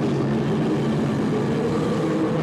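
Live rock band playing a low, sustained droning passage, the electric bass guitar and amplified guitars holding long notes without clear drum beats.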